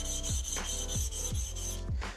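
Steel back of a new chisel rubbed back and forth on a wet coarse diamond plate: a steady gritty scraping while the back is flattened and the factory scratch pattern ground away. Background music with a regular beat runs underneath.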